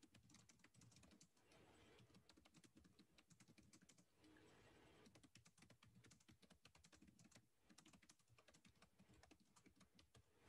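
Faint typing on a computer keyboard: quick, irregular runs of key clicks, broken by short pauses about four seconds in and again near eight seconds.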